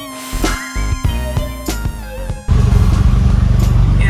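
Electronic music with gliding synth notes and drum hits, cut off abruptly about two and a half seconds in. It gives way to the loud, steady idle of a Mazda RX-7 FD's twin-turbo 13B rotary engine, a low rumble with a fast, even pulse.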